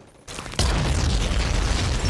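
War-film soundtrack: a shell explosion on a beach. It comes in about half a second in and carries on as a loud, sustained rumble with heavy low end.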